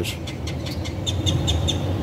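A small bird chirping a quick run of about six short, high notes over a steady low outdoor rumble.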